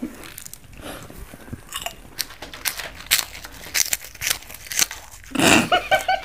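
Close-up eating sounds: crisp snacks and puffed wheat being bitten and chewed, with quick, irregular crunches, then a louder burst of noise near the end.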